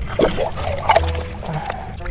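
Hands scooping and splashing through muddy water and pebbles in a dug clam hole, with background music underneath.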